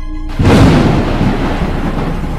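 A drone of eerie music breaks off and a sudden loud thunderclap crashes in about half a second in, rumbling on as it slowly fades: a dramatic thunder sound effect.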